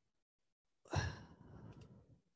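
A person's sigh close to the microphone: a short breathy exhale about a second in that fades away.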